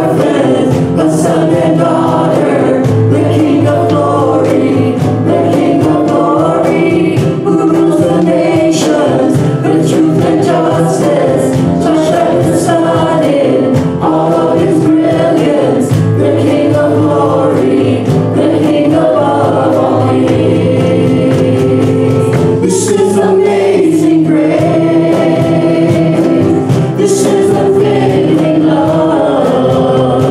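Congregational worship singing: many voices singing together with a praise band, led by a man singing into a microphone over electric keyboard accompaniment.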